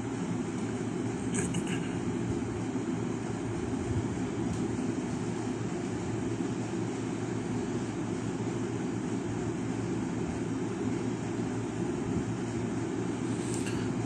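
Steady, unchanging background hum, heaviest in the low range, with no distinct events.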